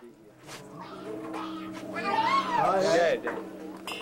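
Voices in a crowded room over a steady low hum. About two seconds in, one high voice calls out in a wavering cry that rises and falls in pitch for about a second.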